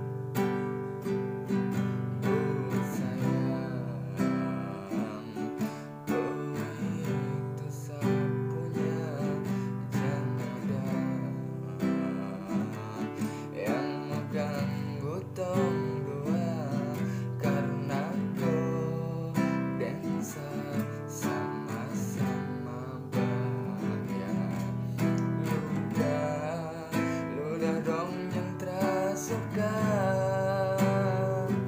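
Acoustic guitar strummed in a steady down-down-up-up-down-down pattern, moving through the chords C, D, G, G7, E minor and A minor.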